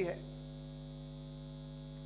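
Steady electrical mains hum, a few low unchanging tones with nothing else over them, just after the last syllable of a man's sentence dies away.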